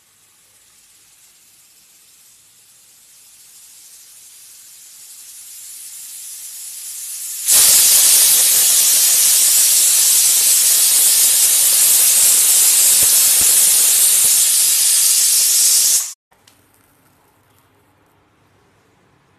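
Stovetop pressure cooker venting steam on a gas burner: a hiss that builds for several seconds, then turns suddenly loud about seven seconds in as the weight lifts and the cooker whistles. This is the sign that it has come up to pressure. The loud hiss holds for about eight seconds and stops abruptly near the end.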